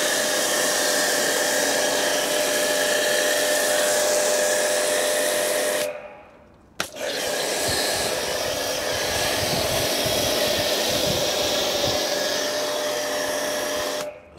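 Pressure washer spraying snow foam through a foam lance onto a car wheel: a steady hiss with a steady whine in it. It stops for under a second about six seconds in, then sprays again.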